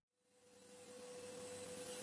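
A moment of dead silence, then faint room tone with a steady hum on one tone that fades in over the first second.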